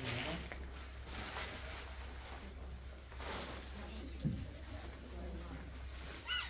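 Room tone over a steady low hum, with faint background voices and a few soft rustles: one at the start, one about a second and a half in and one just after three seconds.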